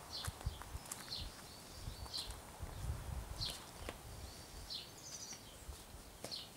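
Small birds chirping in short, separate high calls, several every second, over a low rumble with soft thumps.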